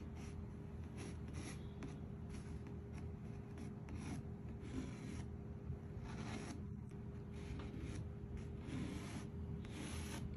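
Chalk rubbing over canvas in short, repeated strokes, tracing around an acetate template; faint.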